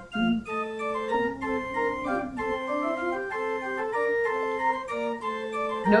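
Organ playing hymn accompaniment in steady sustained chords that change about every half second, after a brief break at the very start.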